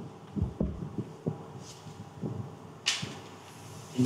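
Chalk writing on a blackboard: an irregular run of soft taps and knocks as the chalk strikes the board, with a brief scraping hiss about three seconds in.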